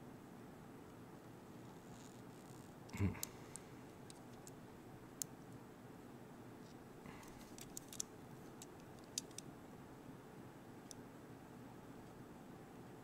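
Faint, scattered clicks and ticks of a handheld digital caliper being handled and adjusted against a small part, with one short spoken number about three seconds in.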